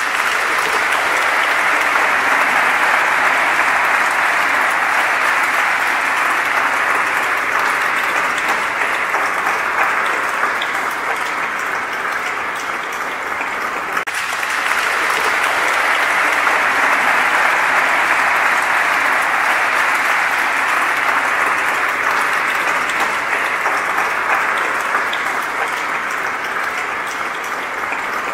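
Audience applauding steadily in a large church, many hands clapping without a break. The clapping eases slightly about halfway, then swells again.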